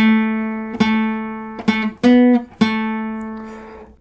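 Steel-string acoustic guitar playing a slow lead line of single picked notes: five notes, the last left ringing and fading.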